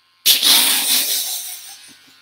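A man's heavy exhaled sigh: a sudden loud rush of breath about a quarter second in, fading away over a second and a half.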